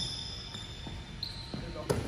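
Basketball sneakers squeaking on a hardwood gym floor in short high squeals, with faint knocks and a sharper thump of the ball shortly before the end.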